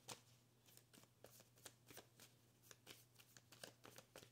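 Tarot cards being shuffled or handled: faint, irregular soft clicks and flicks of card on card against near silence.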